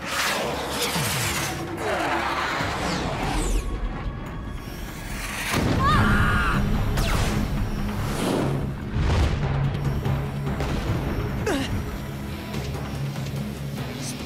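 Action background music for a cartoon flight chase, with whooshing fly-by effects and occasional booms.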